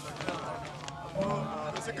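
Quiet male speech: a few soft, low spoken words between pauses.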